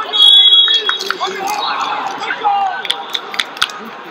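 A referee's whistle blows one steady, piercing blast of under a second, then shouting voices carry on, broken by a few sharp smacks near the end.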